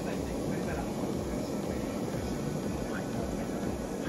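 Tabletop gas burner running under a pot of miso broth, a low steady rush of the flame as the broth heats. Faint voices sound behind it.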